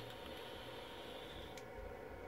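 Faint steady hiss of a vape's dripping atomizer as it is fired and drawn on, the coil vaporising juice while air is pulled through. It stops about one and a half seconds in, with a faint click.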